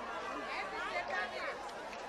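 Faint background chatter of several people's voices, with no clear words.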